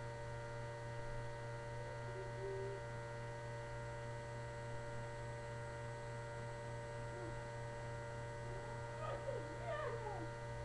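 Steady electrical hum with several high, thin whining tones above it, unchanging throughout. Near the end, a few faint short calls sweep up and down in pitch.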